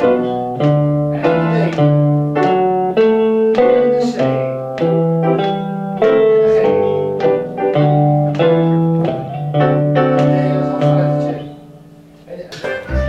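Guitars playing a chord progression together in a group lesson, plucked notes ringing and decaying a few times a second over a low bass line, dying away near the end.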